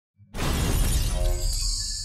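Logo-intro sound effect: a sudden burst of shattering glass about a quarter of a second in, over a deep rumble, fading into high ringing musical tones near the end.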